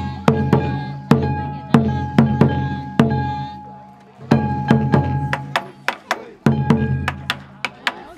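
Festival hayashi on a taiko drum mounted on a kiriko float: drum beats with sharp stick clicks in a steady rhythm of about three a second, under a held high note. The playing pauses briefly about four seconds in, then starts again.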